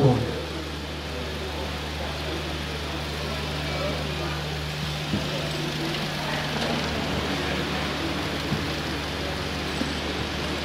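Room tone of a crowded hall: a steady low hum under a faint, even murmur from the audience, with a couple of soft knocks.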